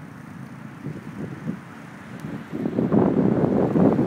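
Wind buffeting the microphone: a low, even rush that grows louder about halfway through.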